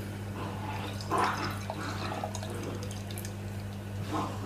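Beer being poured from an aluminium can into a stemmed glass, the liquid splashing as the glass fills and loudest about a second in. A steady low hum runs underneath.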